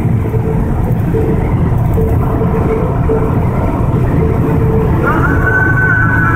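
Steady low rumble of a car's engine and road noise heard inside the cabin of a moving car. About five seconds in, a held musical tone comes in on top.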